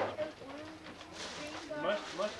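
Indistinct voices in a room, with a brief rustle of wrapping paper a little over a second in.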